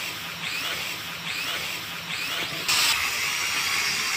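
Small toy quadcopter drone's motors and propellers buzzing overhead, the pitch swelling a few times as it manoeuvres, then getting suddenly louder about two-thirds of the way through.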